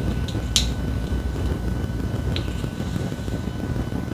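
Steady low hum of an air fan in a small room, with a few light plastic clicks as perm rods are unclipped from braided hair.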